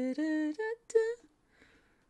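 A woman humming a short tune: a few short held notes at changing pitches, stopping a little over a second in.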